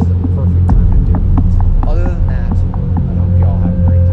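A loud, steady low hum with a throbbing pulse, and a few faint clicks and brief sliding tones about two seconds in.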